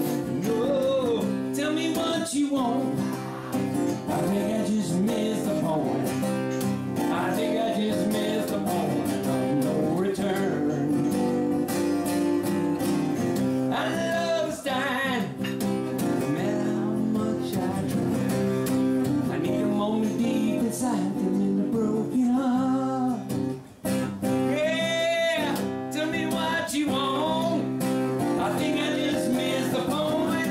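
A man singing while strumming an acoustic guitar, with one brief break in the sound about three-quarters of the way through.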